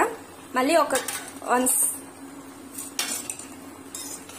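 A spatula stirring raw mutton, onions and chillies in a metal pot, scraping and clinking against the pot's sides in short irregular strokes.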